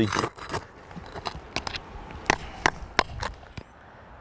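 Asphalt roof shingles being handled and set in place: a string of irregular sharp taps and clicks with light scraping, the loudest taps a little past halfway.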